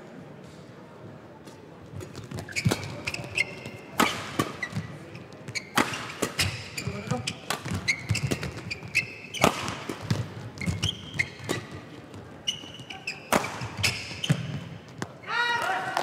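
Badminton rally: sharp, irregular racket hits on the shuttlecock, with short high squeaks of court shoes on the floor between strokes. A player shouts near the end as the rally finishes.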